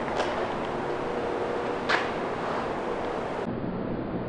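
Steady background hiss with a faint low hum, broken by two short clicks, one near the start and one about two seconds in.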